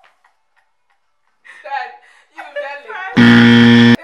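A loud, steady horn-like sound effect with a buzzy, many-toned sound, lasting just under a second near the end and starting and stopping abruptly, preceded by women's laughing voices.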